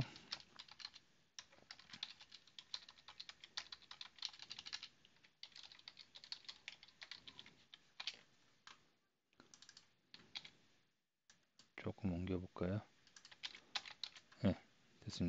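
Computer keyboard typing: quick, irregular keystrokes, faint, with a few short pauses, as a line of code is typed.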